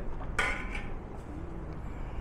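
A metal ladle knocks once against a large stainless-steel soup pot about half a second in, with a short ring, over a steady low rumble.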